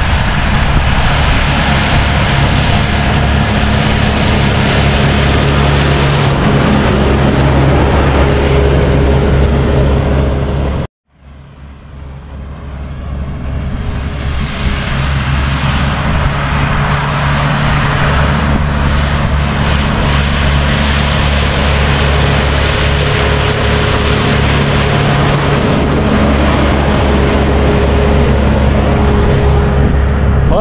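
Valtra tractor engine running steadily under load while mowing with a front mower. The sound cuts out briefly about eleven seconds in, then comes back gradually over a few seconds.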